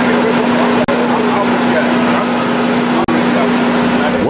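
Loud ambient sound beside a standing passenger train at its open door: a steady rushing noise with a constant low hum, faint voices of people nearby, and two brief breaks about a second in and near three seconds in.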